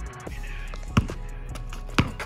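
Background music with steady bass tones, and two sharp thuds about a second apart: a basketball bounced on an asphalt driveway.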